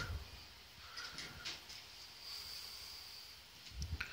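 Quiet room noise with a faint high-pitched whine in the middle and a few soft clicks.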